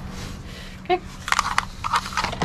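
A few quick clicks and rustles of small items being handled and set down in a cardboard box, over a steady low hum.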